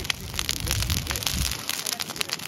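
Burning brush pile of dry twigs and branches crackling, with many rapid, irregular sharp snaps and pops.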